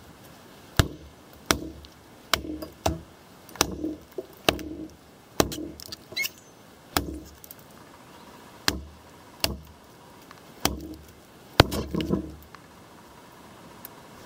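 Ontario RTAK II, a large full-flat-ground chopping knife, chopping into a log: a steady series of sharp strikes of blade into wood, about one a second.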